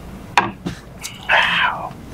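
A glass tasting glass set down on a wooden bar top with a sharp knock, followed by a lighter tap, then a short breathy exhale after a sip of bourbon.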